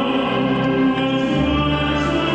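Operatic tenor singing held notes into a microphone, accompanied by a military wind band. The band's chord changes about halfway through.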